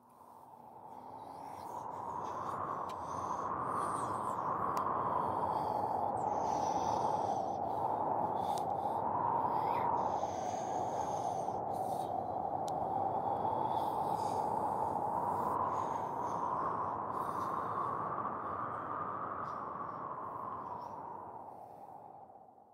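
Storm wind blowing steadily, with a slowly rising and falling whistle-like pitch. It fades in over the first few seconds and fades out near the end.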